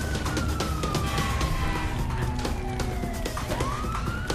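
An emergency siren wailing: one long tone that falls slowly for over three seconds, then sweeps back up near the end.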